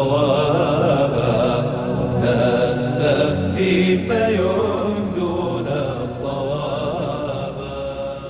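Chanted vocal theme music of a TV programme's opening titles, loud and continuous, easing down in volume over the last couple of seconds.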